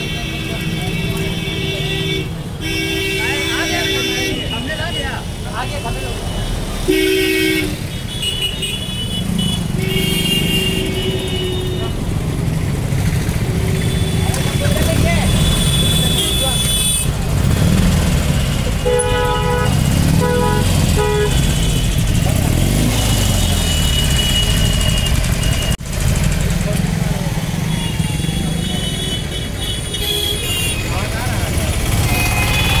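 Street traffic: a steady engine and road rumble, with vehicle horns honking several times, including a quick run of short beeps about two-thirds of the way through.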